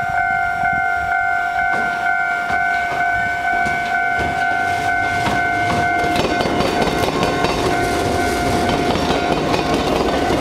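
A railway level-crossing warning bell rings steadily. From about six seconds in, an Iyo Railway suburban train's wheels clatter and rumble over the diamond crossing where the railway crosses the tram tracks, while the bell keeps ringing more faintly.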